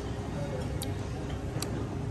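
Two short, sharp clicks a little under a second apart over a steady low background murmur.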